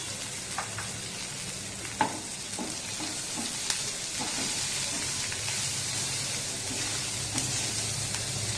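Chopped green chillies frying and sizzling in a nonstick kadhai while a wooden spatula stirs and scrapes them, with a steady hiss throughout. A few light knocks of the spatula on the pan cut through, the sharpest about two seconds in, over a low steady hum.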